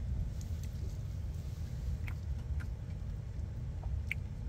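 Steady low rumble of a car cabin with the engine idling, with a few faint soft clicks of chewing a cheese-dipped fry.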